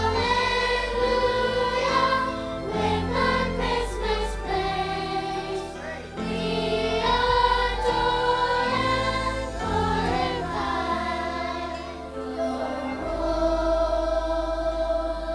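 A choir singing slow, sustained phrases over instrumental accompaniment with held bass notes, sacred music in a church service.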